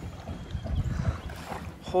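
Wind buffeting the microphone outdoors: an irregular low rumble, strongest around the middle.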